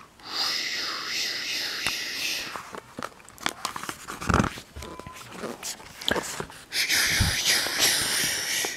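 A long hiss, then scattered clicks and knocks as a paperback comic book is handled, and a second hiss near the end as a page is turned.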